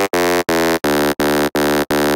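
Vital software synthesizer playing its 'BS Swedish House' preset: the same chord stabbed over and over, about three times a second, each stab cut short by a brief gap.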